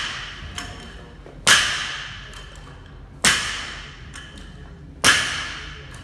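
Loaded barbell striking the rubber gym floor three times, about every two seconds, between rapid clean reps. Each impact is followed by a metallic ringing from the iron change plates and collar clips.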